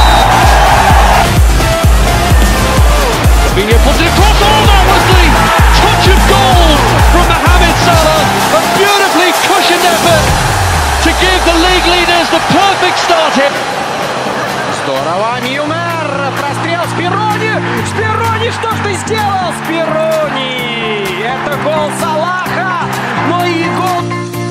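Electronic music with a steady beat and a voice over it. The beat stops about eight seconds in, leaving held bass notes under the melody and voice.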